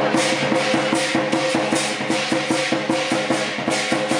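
Southern Chinese lion dance percussion: drum, cymbals and gong played in a fast, steady rhythm of about four strikes a second, the metal ringing on between strikes.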